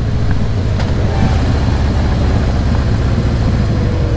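Harley-Davidson Heritage Softail Classic's V-twin engine running steadily under way at cruising speed, with wind and road noise rushing over it.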